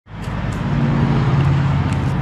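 A steady, low mechanical hum from a running motor, with a few faint clicks.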